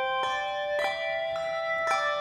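A handbell choir playing a slow piece: new bells are struck about three times, and each clear note rings on over the ones before.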